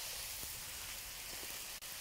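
Chicken and vegetables sizzling steadily in a hot wok on high heat during a stir-fry, with a single short click near the end.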